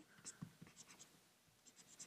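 Marker pen writing on paper: faint, short scratching strokes, a few near the start and a quick run of them in the second half.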